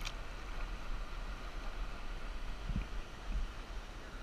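Steady rush of a shallow mountain stream running over rocks, with a low rumble of wind on the microphone. A brief click right at the start.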